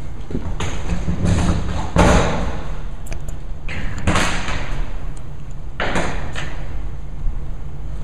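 A steady low hum with a series of dull thumps and noisy bursts over it, about four of them, the loudest about two seconds in.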